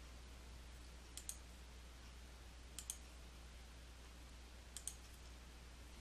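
Three computer mouse button clicks, each a quick double tick of press and release, spaced about one and a half to two seconds apart, as styles are selected in the software. Otherwise near silence: faint room hum.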